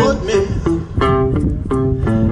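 Electric blues guitar played on a red semi-hollow-body guitar: a run of single-note licks filling the gap between sung lines.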